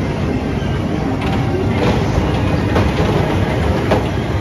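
Cars of a children's caterpillar-style fairground ride rolling along their track: a steady low rumble with several wheel clacks.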